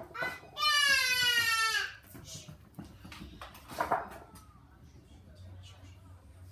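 A young child's high-pitched wordless squeal, held for over a second with its pitch sliding slightly down, followed a few seconds later by a brief shorter vocal sound.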